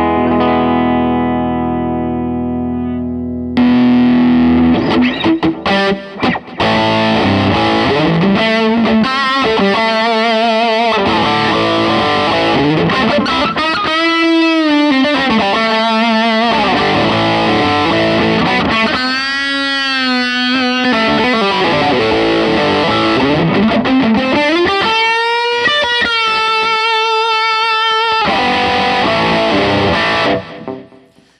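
Electric guitar on a clean amp channel, a chord ringing out, then about three and a half seconds in, played through a CMATMODS Brownie distortion pedal (a BSIAB circuit, a Marshall-style distortion): heavily distorted lead lines with long sustain, bent notes and wide vibrato, with a little reverb and delay. It stops just before the end.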